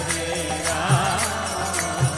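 Devotional kirtan: voices chanting a melody over a hand drum beating a steady rhythm and small hand cymbals ringing.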